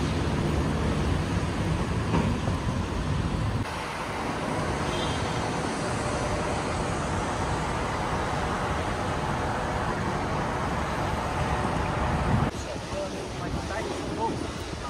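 City street ambience: steady traffic noise from passing cars, with the background changing suddenly about four seconds in and again shortly before the end.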